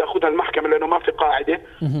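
A man speaking in Arabic over a telephone line, with the thin, muffled sound of a phone call and a brief pause near the end.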